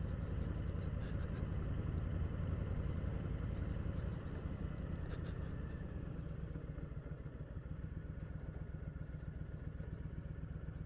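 Motorcycle engine running while riding, with a steady low rumble of firing pulses that eases off and grows quieter over the second half as the bike slows.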